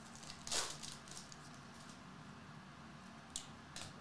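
Stiff Topps Chrome trading cards being slid and shuffled in the hands: a soft swish about half a second in, then two light ticks near the end.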